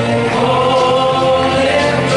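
Gospel praise-and-worship singing: voices singing over instrumental backing with a steady bass, holding one long note.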